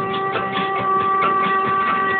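Music playing on a car's satellite radio inside the cabin: one note held for most of the two seconds over a steady beat.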